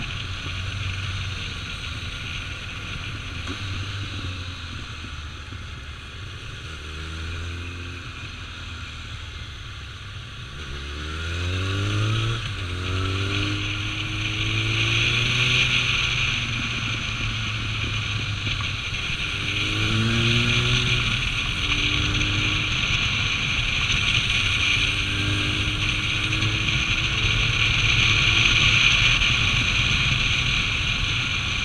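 Kawasaki ZRX1200's inline-four engine heard from the rider's seat while it is ridden along a winding road, with steady wind noise on the microphone. The engine note rises as the bike accelerates, about a third of the way in and twice more later, and the whole sound is louder from then on.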